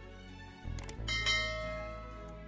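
Subscribe-animation sound effects over background music: a few short clicks a little over half a second in, then a bell ding about a second in whose tone rings on and slowly fades.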